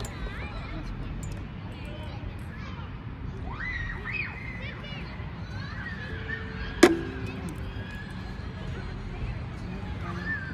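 Faint talking over a steady low outdoor rumble, with one sharp knock about seven seconds in, followed by a brief ringing tone.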